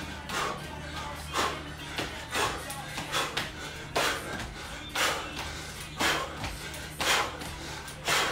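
Bare feet landing on a hardwood floor in repeated pivot jump squats, a short thud about once a second, over quiet background music.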